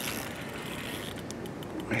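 A spinning reel being handled while its drag is checked: a few faint, irregular clicks in the second half, over steady background noise.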